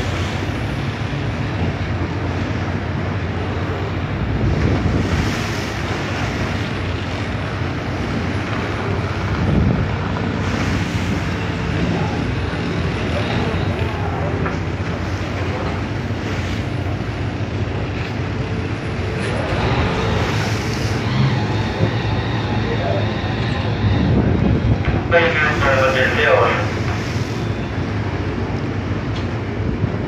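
Steady drone of a ship's engine mixed with wind on the microphone and sea noise. A voice calls out briefly about 25 seconds in.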